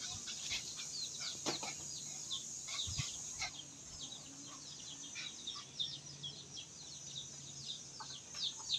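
Faint, quick high chirps of small birds, many short notes each sliding downward, repeated throughout, with a couple of soft knocks.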